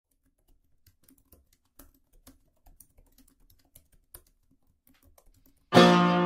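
Computer keyboard typing: faint, irregular key clicks. Near the end, music with a plucked-string chord comes in suddenly and much louder.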